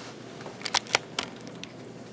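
A quick run of about five sharp clicks, starting about half a second in and over within about half a second.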